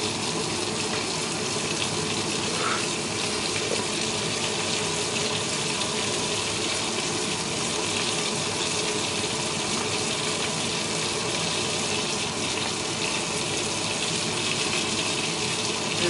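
Breaded cutlets frying in oil in a pan, giving off a steady sizzle.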